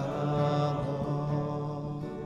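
Worship music: a long held sung note over acoustic guitar, slowly fading.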